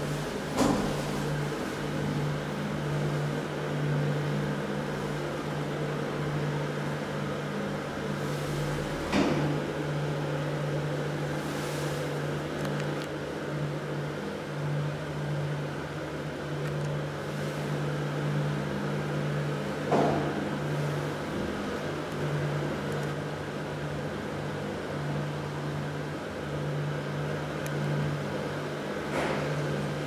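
KONE passenger lift running in its shaft: a steady low motor hum, with a few sharp clicks spaced several seconds apart.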